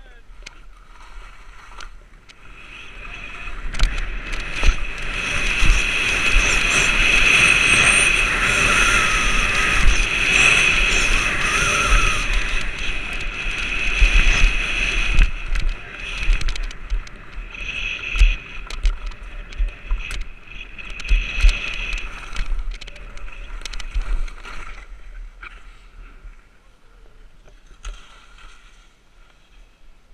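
Skis sliding and scraping over firm snow on a fast downhill run, with wind rushing over the camera's microphone. It builds to its loudest in the first half, has sharper scrapes on the turns, and eases off near the end as the skier slows.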